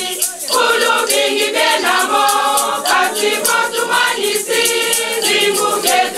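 Church choir of women's voices singing together, with hand-held percussion shaken in a quick, steady beat of about four or five strokes a second.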